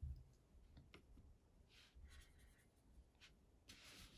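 Near silence: faint clicks and soft brushing as a fine watercolour brush picks up black paint from the palette and is laid to the paper.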